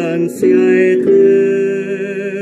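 A man singing a Spanish-language hymn in long held notes with a slight vibrato over instrumental accompaniment, moving to a new note about half a second in and again about a second in.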